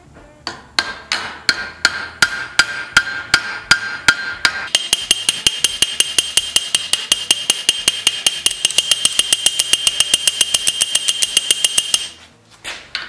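Small hammer striking a steel rivet end over its washer in quick, even blows, peening the rivet over on a wooden buggy-wheel felloe, each blow ringing metallically. The blows come about three a second at first; about five seconds in they quicken to about six a second and the ring turns higher.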